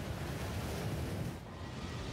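Sound effect of a huge ocean wave surging: a steady rush of water over a low rumble, the upper hiss dipping briefly about one and a half seconds in.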